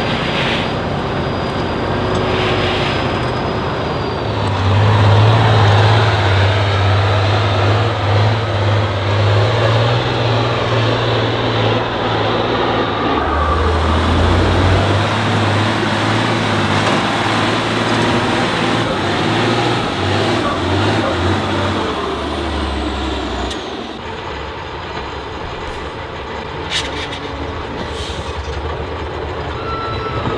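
Diesel engine of a heavy 8x8 off-road trial truck labouring on a steep climb, a strong low, steady note whose pitch drops about halfway through.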